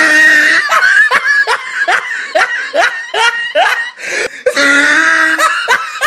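A person laughing hard: a run of short rising bursts, about three a second, then a longer held laugh near the end.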